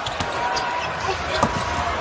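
A basketball bouncing on a hardwood court a few times, the sharpest bounce about one and a half seconds in, over the steady noise of an arena crowd.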